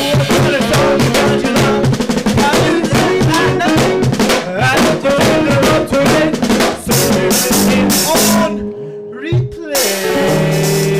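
A small jazz-punk-hip-hop band playing live: busy drum kit with rimshots, electric bass, electric guitar and a vocalist on a microphone. About eight and a half seconds in the band drops to a brief, quieter stretch with one held, gliding note, then comes back in full.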